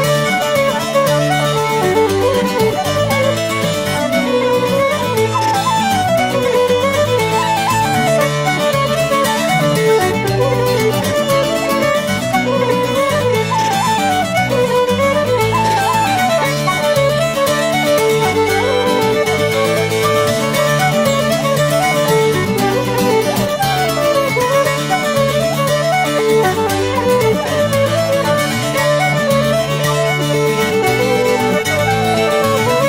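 Instrumental Irish folk music: fiddle and wooden Irish flute playing a melody of quick running notes over Irish bouzouki accompaniment, with no singing.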